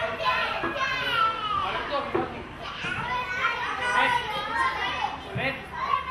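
Young children shouting and calling out to one another on a football pitch, several high voices overlapping.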